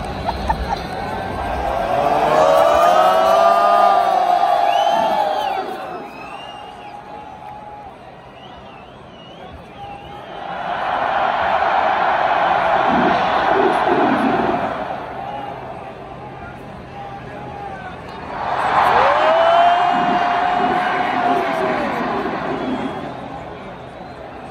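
A huge stadium crowd cheering in three big swells, about two, eleven and nineteen seconds in, with long sustained yells of many voices. Each swell is one side of the stands answering in turn as the mascot rouses it.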